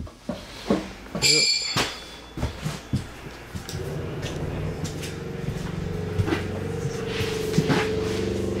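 Knocks and clatter, with a brief high squeal about a second in, as someone climbs into a travel trailer and moves through it. From about halfway a steady hum of several tones sets in and keeps going.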